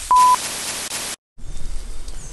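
A short electronic beep, one steady tone lasting about a quarter second, over a hiss, followed a little later by a brief dropout to total silence.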